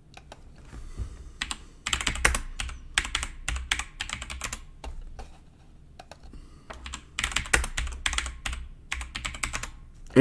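Typing on a computer keyboard: a run of quick key clicks, a lull of about two seconds, then a second run of clicks.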